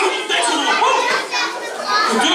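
Many children's high voices chattering and calling out at once, overlapping with no single voice standing out.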